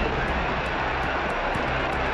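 Steady rushing noise with a low, constant hum, the background of an old 1950s fight film's soundtrack, heard in a gap in its narration.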